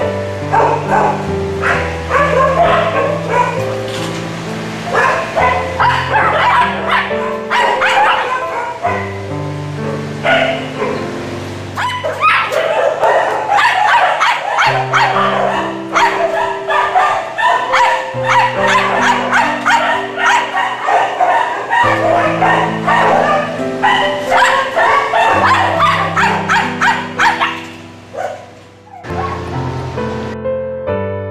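Several dogs barking and yipping over background music of slow, sustained piano-like notes. The barking drops away a little before the end, leaving the music.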